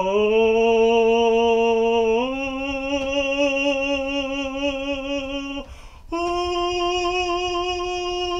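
A man singing a sustained "oh" vowel as a vocal warm-up, climbing in pitch in held steps toward the break between chest voice and head voice. The pitch steps up twice in the first few seconds; after a short breath about six seconds in, he holds a clearly higher note.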